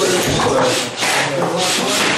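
Timber planks being slid and rubbed over a table and against each other, a rough wooden scraping that comes in repeated swells.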